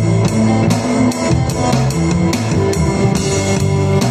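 Live band playing an instrumental groove: a drum kit heard close up, with steady electric bass notes and guitar.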